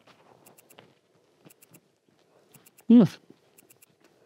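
Two people eating herring sandwiches in soft bread rolls: faint chewing and small mouth noises, with one appreciative hummed "mm" about three seconds in.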